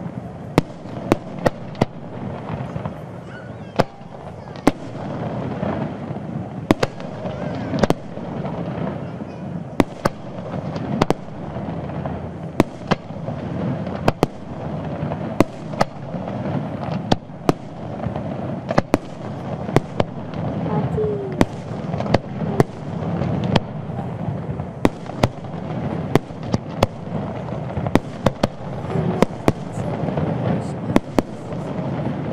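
Aerial firework shells bursting in a display, with dozens of sharp bangs at irregular intervals, often several in quick succession. Voices can be heard in the background.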